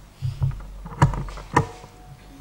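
Knocks and bumps from hands handling a lectern close to its microphone: two dull thumps, then two sharper knocks about half a second apart.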